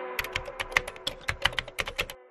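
Typing sound effect: about a dozen quick, unevenly spaced keystroke clicks, one for each letter of on-screen text being typed out. The last notes of a song fade out underneath.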